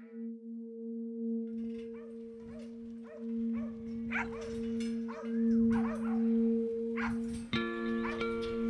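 A flock of sheep bleating, many short calls overlapping about every half second, from about a second and a half in. Underneath is a steady held music chord that changes to a fuller, bell-like chord near the end.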